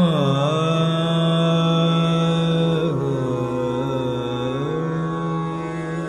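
Male Hindustani classical voice singing a slow, wordless alaap in Raga Jog: a long held note glides down at the start, settles, sinks lower about three seconds in, and climbs back up about a second and a half later, over a steady drone.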